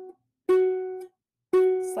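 Ukulele playing a single-note riff: the same note plucked twice, about a second apart. Each note rings for about half a second before it is damped.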